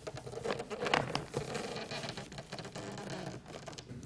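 Faint, irregular soft clicks and rustling, with a low hum underneath.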